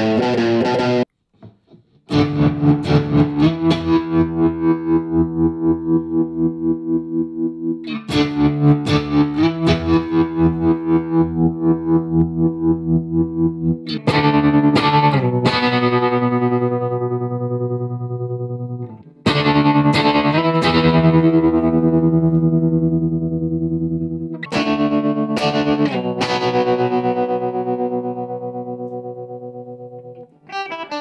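Electric guitar with a Seymour Duncan Quarter Pound bridge pickup playing crunchy overdriven chords through a mini amp with tremolo: each chord is struck and left to ring for several seconds. In the first half its volume pulses evenly, about four times a second. There is a short break about a second in.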